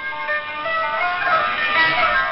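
Instrumental music received over a shortwave radio broadcast, a melody of held notes heard through a narrow audio bandwidth with no highs.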